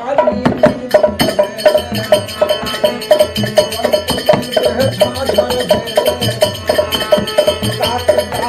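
Folk music: a harmonium sounding steady chords, with a barrel-shaped hand drum and small hand cymbals keeping an even beat of about three strokes a second, under a man's singing voice.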